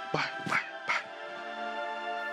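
Drama background score: soft, sustained held chords under a few short spoken words.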